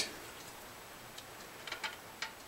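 A few faint, light metallic clicks and ticks from a metal string-action gauge touching the strings of an electric guitar as the string height is measured.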